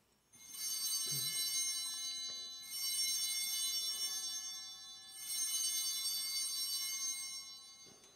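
Altar bells rung three times in succession at the elevation of the host after the consecration, the sign that the consecrated host is being raised. Each ring is a shaken cluster of small bells that rings on for about two and a half seconds before the next.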